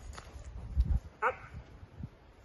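A few low thumps, then one short high-pitched dog vocalisation just over a second in.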